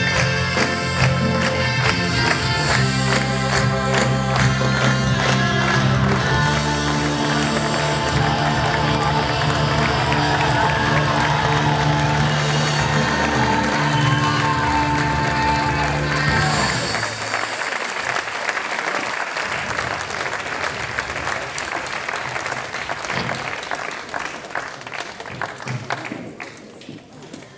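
A live rock band with singers performing the closing song of a stage musical. The music stops about 17 seconds in, and audience applause follows, slowly dying away.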